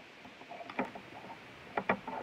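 Close handling noise of a small nail polish bottle and rubber band: a few small clicks and taps, one just under a second in and a louder double click near the end.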